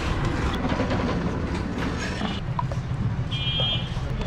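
Roadside street noise: a steady low rumble of passing motor traffic with scattered clicks, and a thin high tone in two short spells in the second half.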